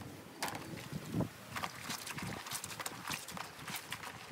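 Wet, soapy cotton clothes rubbed and squeezed by hand in a plastic washbasin, making irregular squelching and slapping strokes, the loudest about a second in.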